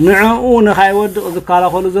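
A man's voice in long, drawn-out phrases.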